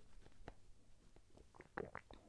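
A person sipping from a mug and swallowing: a few faint mouth clicks, then a short louder swallow near the end.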